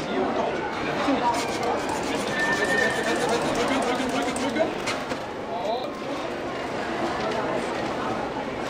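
A long modelling balloon being pumped up with a hand pump and then twisted, over people chattering.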